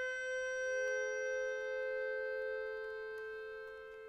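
Concert accordion holding a long chord of two close, clashing notes in the middle register, which fades away towards the end.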